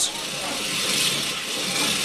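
A large open fire burning, a steady rushing noise.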